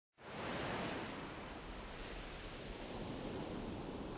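A steady rushing noise, like wind or running water, that fades in just after the start and holds even throughout.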